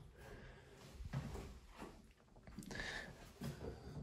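Quiet small-room tone with a few faint, soft knocks and rustles.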